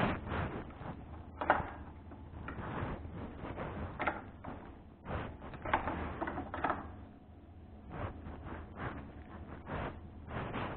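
Irregular knocks, clicks and rattles of objects being handled, with a sharp knock about a second and a half in and a cluster of them past the middle, over a steady low hum.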